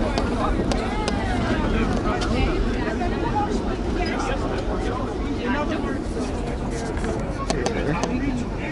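Vintage R1-9 subway cars running through the tunnel into a station: a steady low rumble of wheels on rail, with a few sharp clicks near the end, under people's voices.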